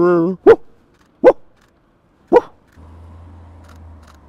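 A French bulldog puppy barking: three short, sharp barks about a second apart. A faint low steady hum sets in near the end.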